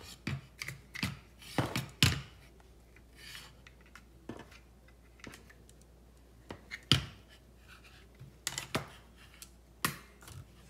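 Hands unpacking a stick vacuum: scattered sharp clicks and knocks of its plastic pole and parts, with short rustles of cardboard and a paper insert. The loudest knocks come about two seconds in and about seven seconds in.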